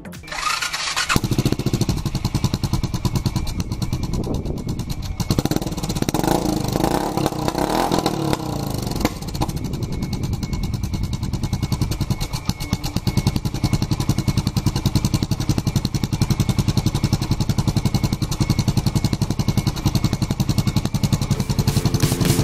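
Suzuki Savage single-cylinder four-stroke motorcycle engine coming in about a second in. It is revved up and down a few times, then settles into a steady, even idle.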